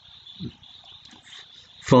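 A pause in a man's narration: faint hiss and room tone, with one brief soft low sound about half a second in. His voice comes back in near the end.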